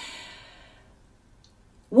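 A woman's breathy sigh, fading out over about a second.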